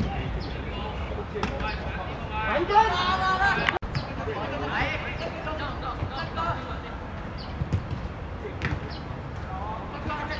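Outdoor football match: players' voices calling and shouting across the pitch over a steady low background, with a few short knocks of the ball being kicked. The sound cuts out briefly a little before four seconds in.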